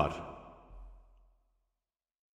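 The last word of a man's narration fades away in its echo over about a second, then dead silence.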